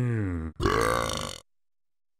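A cartoon monster character burping twice: a short burp falling in pitch, then a longer one that stops about a second and a half in.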